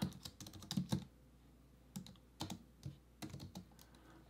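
Typing on a computer keyboard: a quick run of keystrokes in the first second, a short pause, then a few more scattered key presses.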